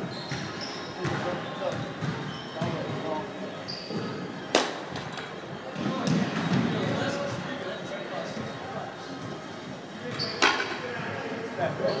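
A baseball bat strikes a pitched ball twice, about six seconds apart. Each hit is a sharp crack that rings briefly in a large, echoing hall.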